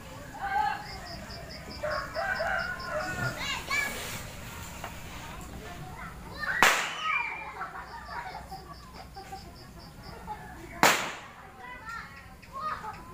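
Two sharp firecracker bangs, one a little past the middle and one near the end, with children's voices in between.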